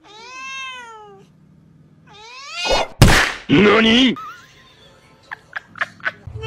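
Tabby cats squaring off: a long meow, a shorter rising meow, then a sudden loud burst of noise and a loud, harsh yowl about halfway through.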